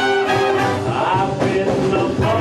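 Big band playing jazz live, with a saxophone section and trombone, and a man singing lead into a microphone over it.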